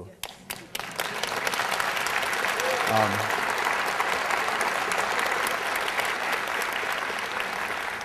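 Audience applauding steadily for several seconds, a dense patter of many hands clapping that builds up about a second in and eases off slightly near the end.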